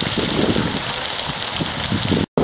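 Beer pouring from a can into a cast-iron pot of hot browning ground beef, sizzling with a steady hiss in the fat.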